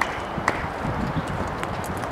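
Scattered sharp knocks of tennis balls bouncing and being struck on hard courts, the two loudest at the start and about half a second in, over a low steady outdoor rumble.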